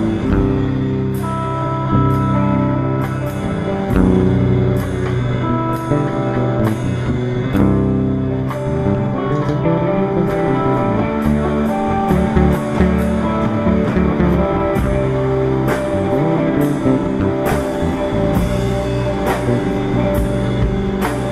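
A rock band playing a loose psychedelic jam: a drum kit keeping a steady beat with regular cymbal hits, over a prominent electric bass line and guitar.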